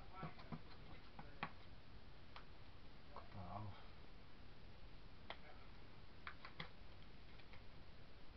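Faint, irregular clicks and taps from hands handling paper, card and tools on a worktable: a cluster in the first second and a half, then single clicks spread through the rest.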